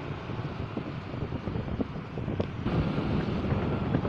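Wind buffeting the microphone over a steady low rumble of outdoor traffic, with a slight change in the background about two and a half seconds in where the recording cuts.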